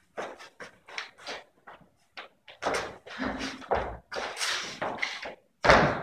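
Two dancers' shoes stepping, tapping and scuffing on a wooden studio floor in an uneven rhythm of short knocks, with a heavier thump shortly before the end.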